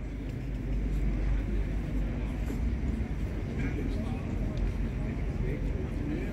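Steady low rumble of outdoor town-square ambience, with a few faint voices from the crowd standing around.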